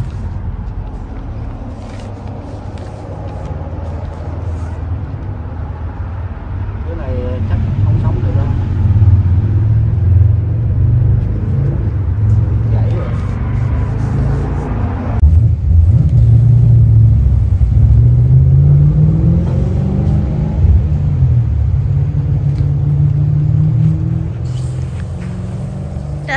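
A loud, low engine-like rumble, like a motor vehicle running nearby, swelling in the first half and briefly rising in pitch about three-quarters of the way through.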